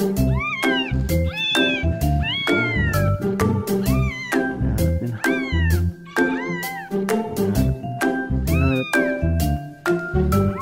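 A recording of a cat meowing, played back: a string of rising-and-falling meows, about one a second, over background music with a steady beat.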